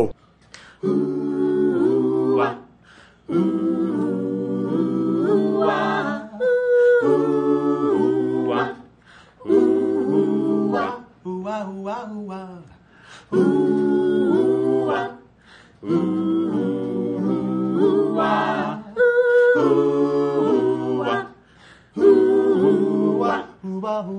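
Mixed-voice a cappella ensemble of five singers, men and women, singing in close harmony without instruments. The song moves in phrases of two to three seconds with brief breaks between them, and goes softer for a couple of seconds around the middle.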